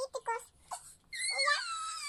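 A young child's long, high-pitched squeal starting about a second in, its pitch falling and then rising again.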